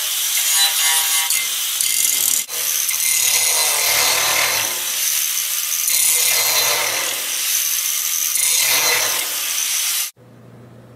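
Angle grinder with an abrasive disc grinding steel angle iron from an old bed frame, shaping its end to fit and preparing the mating surfaces for welding. Steady, loud grinding that breaks off briefly about two and a half seconds in, then carries on and stops abruptly at the end.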